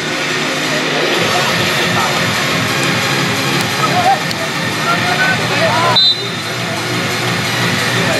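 Footballers and sideline onlookers calling and shouting over a steady rushing background noise, with a brief high whistle blast about six seconds in.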